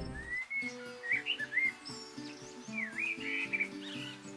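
Bird chirps and short gliding whistles over soft background music with sustained notes.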